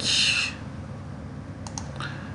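Two quick computer mouse clicks close together about three-quarters of the way through, over a low steady background. A short breathy hiss at the very start is the loudest sound.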